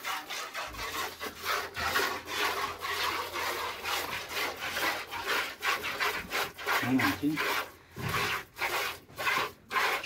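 Cow being milked by hand: jets of milk squirting into a pail in a quick, steady rhythm of swishing strokes, several a second.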